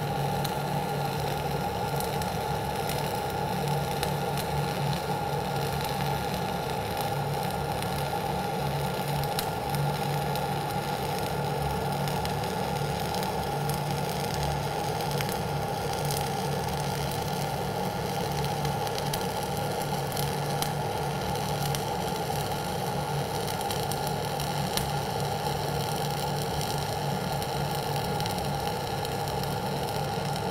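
Gas-shielded (dual shield) flux-cored wire welding arc, run at about 26.5 volts and 480 wire feed speed, crackling steadily through one continuous pass.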